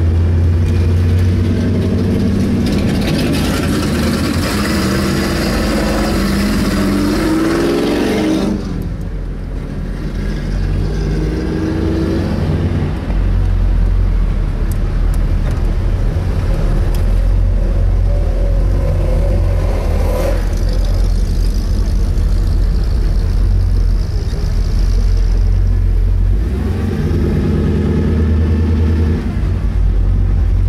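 Pro Street Chevy Nova's engine running with a heavy low rumble while cruising at low speed. It revs up from about three seconds in, falls away sharply about eight seconds in, and revs up again near the end.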